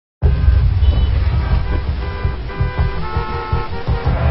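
Motor vehicle noise, a heavy low rumble, with music running underneath and short steady tones on top.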